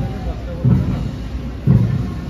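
Military band bass drum beating a slow, steady march beat, about one stroke a second, with faint band music behind it.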